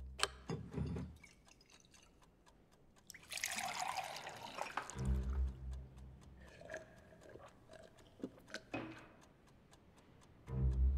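Sparse low bass notes of a music score, with a few sharp clicks, the first just after the start, like chess pieces set on a wooden board. About three seconds in comes a splashing hiss of about a second and a half, like water being poured into a glass.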